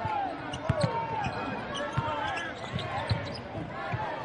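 Basketball dribbled on a hardwood court, a thump about every half second, with sneakers squeaking on the floor between the bounces.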